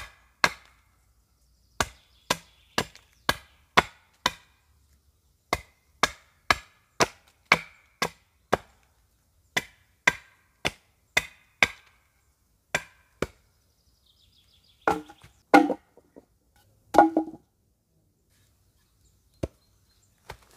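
Hatchet chopping into the end of a wooden pole braced on a log: crisp strikes about two a second, in runs of six or seven with short pauses. About three-quarters of the way through come a few heavier, duller wooden knocks, and a last single strike near the end.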